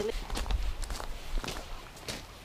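Footsteps on loose gravel, a few irregular steps.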